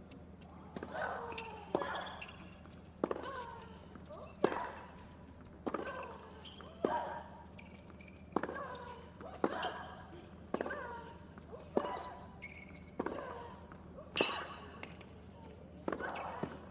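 Tennis rally: rackets strike the ball back and forth in a long baseline exchange, about one hit every second and a quarter. Each hit is followed by a short vocal grunt from the player that falls in pitch.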